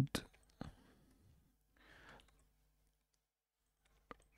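Two short, sharp clicks from the computer's mouse and keyboard within the first second, then a faint breath about two seconds in; otherwise quiet.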